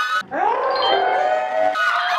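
Several people shouting and calling out excitedly at once, their voices overlapping, as a group scrambles to be first to answer.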